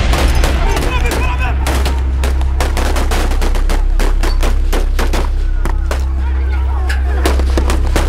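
Police gunfire: a rapid, irregular string of shots, several a second, starting about a second and a half in, with people shouting over a steady low hum.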